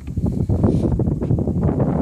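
Wind buffeting the microphone, a loud irregular rumble, with the rustle of the RV skirting material being handled.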